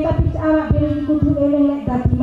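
A voice drawn out in long, slowly shifting held tones, with low thumps underneath about every half second.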